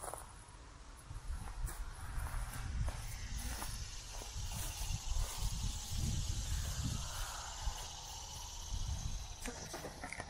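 A steady high drone of insects in the summer trees and grass. It comes up about three seconds in and eases near the end, over uneven low rumbling of wind on the microphone.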